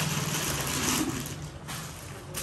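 Rustling and handling noise as copper and brass vessels are moved about on a tiled floor, loudest in the first second, over a steady low hum.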